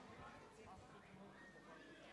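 Near silence: faint room tone in a banquet hall.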